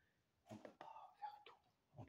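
Quiet, half-whispered speech from a man, starting about half a second in and stopping shortly before the end, over near silence.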